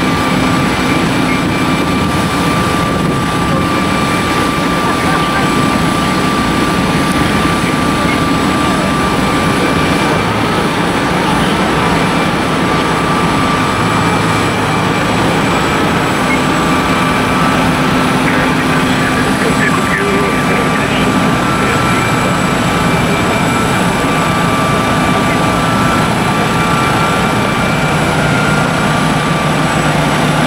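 Loud, steady turbine noise from a Boeing 747-8F standing on the ground: a constant rumble with a thin, unchanging whine on top.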